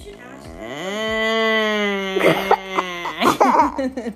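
A young boy crying after hurting himself: one long drawn-out wail, breaking into choppy sobs in the last second or so.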